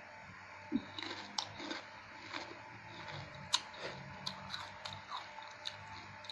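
Close-up chewing and biting of a mouthful of raw vegetable salad, with soft wet mouth noises and several short sharp crunches or clicks, the loudest about a second and a half in and again past the middle.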